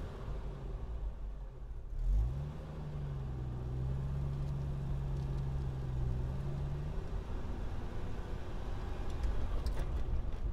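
Car engine and road rumble heard from a moving car; about two seconds in the engine note rises as the car accelerates, then holds steady until it fades around seven seconds in.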